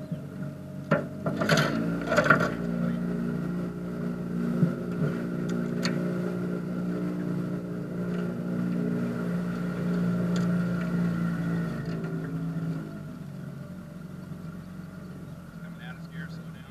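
Boat motor running steadily under way, then easing off about three-quarters of the way through as the throttle comes back. A few sharp knocks in the first couple of seconds.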